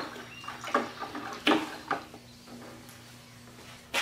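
A stick stirring a liquid mix in a plastic bucket: a few short stirring sounds in the first two seconds, then quieter.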